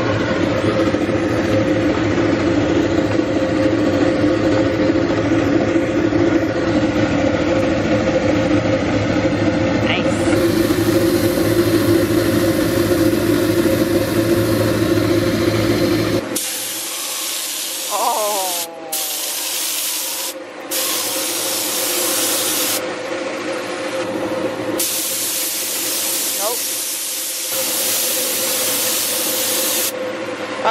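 A steady machine hum for about the first half, then a gravity-cup air spray gun hissing in long bursts with short pauses as it sprays thinned silver paint.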